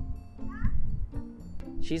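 A child's high-pitched voice calling out briefly, over background music.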